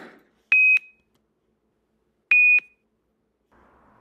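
Two short electronic beeps, each one steady high tone about a quarter second long, the second coming almost two seconds after the first.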